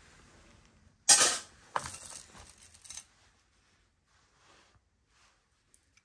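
Jewelry being handled: one sharp click about a second in as a piece is set down or knocked, a smaller click shortly after, then a couple of seconds of light rustling and clinking as pieces are moved about.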